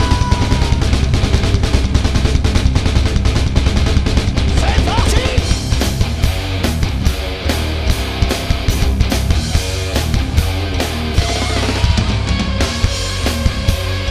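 Metal band playing live, with electric guitar and a drum kit. The drums settle into a steady beat about halfway through.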